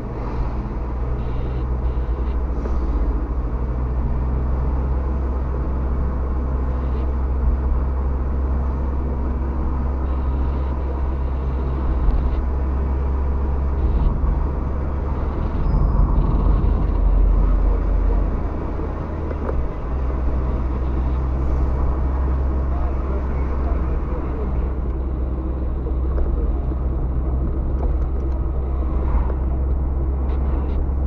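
Steady low rumble of engine and tyre noise inside a moving car's cabin, recorded by a dashboard camera, growing louder for a couple of seconds about midway.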